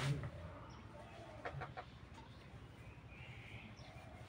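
Broiler chicken clucking quietly, a few short low clucks, just after a sharp knock at the very start.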